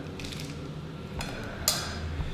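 A metal spoon and a clear plastic cup being handled: light scraping, then a faint click and a sharper click near the end.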